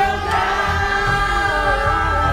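A crowd singing a Christian worship song together in chorus, with held notes over music that has a beat.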